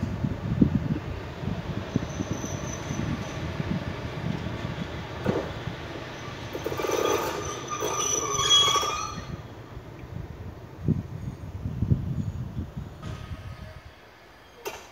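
PKP Intercity EP07 electric locomotive running light at walking pace, its wheels rumbling on the rails. Between about six and a half and nine seconds in, a high squeal rises as it brakes to a stop. Quieter low knocks follow.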